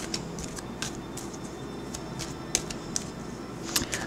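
Tarot cards being shuffled and handled: scattered light flicks and snaps of card stock over a steady low room hum.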